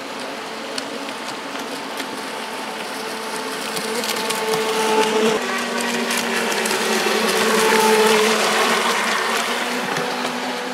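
Pro Boat Shockwave 26 RC boat's small two-stroke gas engine running at speed, a steady whine that grows louder as the boat comes nearer and shifts pitch about halfway through, over the rush of river water.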